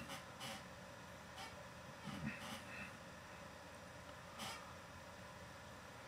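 Quiet microphone hiss in a pause between words, broken by a few soft mouth clicks and a brief faint hum of the voice about two seconds in.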